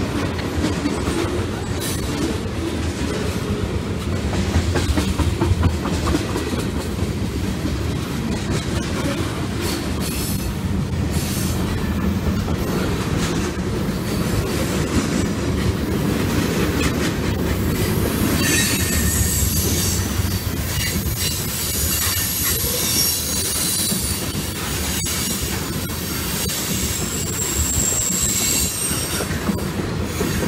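Freight cars, centerbeam lumber flatcars then tank cars, rolling past close by with a steady rumble and wheels clacking over the rail joints. From a little past halfway, a high steel-on-steel squeal rises over the rumble and runs on to near the end.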